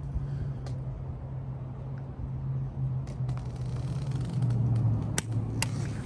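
A steady low hum, with a few faint sharp metallic clicks from a torque wrench and socket being handled on the handlebar clamp bolts; the two clearest come close together about five seconds in.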